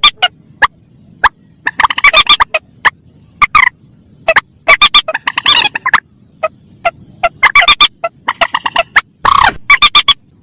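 Recorded lure calls of mandar rails, adults and young together: loud, rapid clusters of short, sharp repeated notes at irregular intervals, with a longer, noisier call about nine seconds in.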